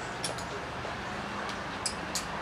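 Urban street ambience in a covered pedestrian arcade: a steady background hum with a few short, sharp clicks of passing footsteps.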